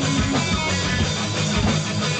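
Live rock band playing electric guitars, bass guitar and a drum kit, with frequent drum hits over sustained guitar chords, in a short gap between sung lines.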